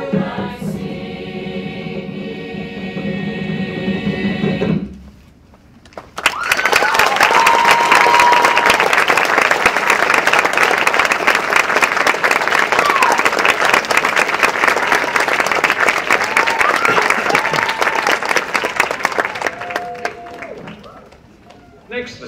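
Mixed choir holding its final chord, cut off about five seconds in. After a brief pause the audience bursts into applause with a few whoops, which goes on for about fourteen seconds before dying away.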